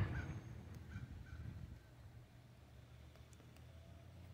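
Quiet outdoor background: a low steady hum, with a few faint, brief chirp-like calls in the first second or so.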